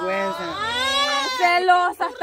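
A voice holding one long drawn-out vowel that slides up and down in pitch, like a teasing sung-out "laaa".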